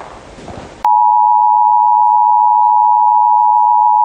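Loud, steady electronic beep tone made of two close pitches near 1 kHz. It switches on abruptly about a second in, after faint room sound from the broadcast footage, and holds unchanged until it cuts off at the end.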